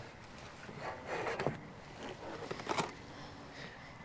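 Faint rustling and handling noises as items in a plastic tub of junk are moved about, with a few light knocks.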